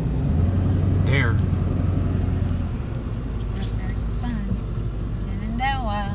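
Steady low engine and road rumble heard inside a pickup truck's cab while driving, heaviest during the first couple of seconds. Two brief voice sounds rise and fall over it, about a second in and near the end.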